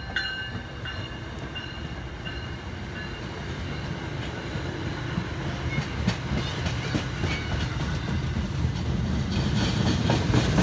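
MBTA commuter rail train's passenger coaches rolling past close by, wheels clicking over the rail joints, with the tail of a horn blast just at the start. The rumble grows louder near the end.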